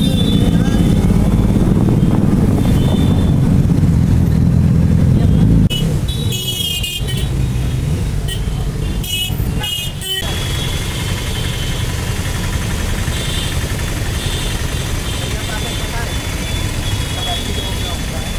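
Motorcycle engine and wind noise while riding in traffic, loud and low. After an abrupt cut about six seconds in, a vehicle horn sounds amid choppy edits, then street ambience with idling engines and voices at a roadside stop.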